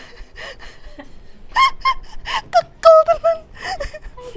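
A woman's voice in short, high-pitched bursts of laughter and exclamation, starting about a second and a half in, with faint breathing before.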